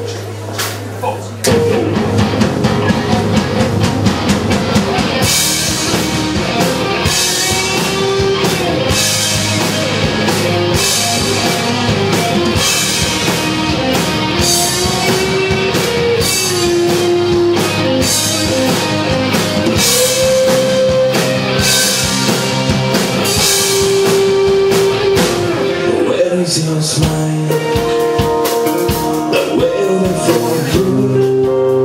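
Rock band playing live on electric guitars, bass and drum kit. A held chord rings for the first second and a half, then the full band comes in, with cymbals crashing from about five seconds in.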